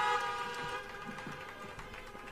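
Several car horns honking together as applause from an audience sitting in their cars. Their steady chord fades out over the first second or so.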